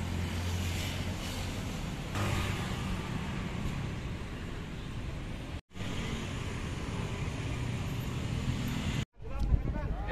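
Steady road traffic noise, a low hum of passing vehicles. It drops out abruptly twice: once about halfway through and once near the end.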